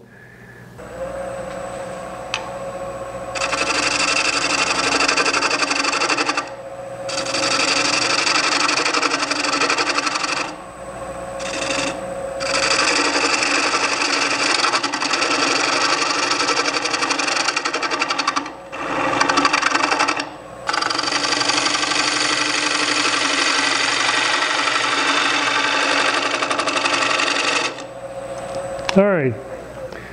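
Wood lathe spinning an out-of-balance rough-turned bowl while a half-inch bowl gouge cuts the tenon, a steady motor hum under several loud cutting passes of a few seconds each with short breaks. The cutting stops near the end while the lathe keeps turning.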